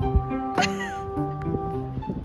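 Background music of sustained, stepping notes over a low bass line. About half a second in, a short, sharp sound with a falling, gliding cry cuts briefly across the music.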